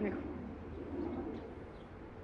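A bird cooing softly: one low call beginning about half a second in and lasting under a second.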